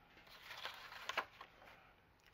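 Sheet of kraft cardstock being slid and handled on a paper trimmer: a soft brushing of paper with a few light taps in the first half.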